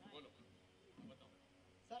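Near silence over a live microphone, with two faint, brief vocal sounds, one just after the start and one about a second in. A man starts speaking into the microphone near the end.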